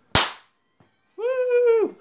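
A pull-string party popper going off with a single sharp crack, then about a second later one held, high-pitched vocal cheer lasting most of a second.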